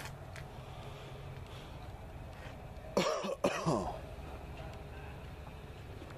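A person clears their throat in two quick parts about three seconds in, the pitch sliding down, over a steady low hum.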